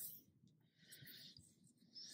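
Near silence, with faint soft rustles of yarn drawn through a crochet hook as single crochet stitches are worked.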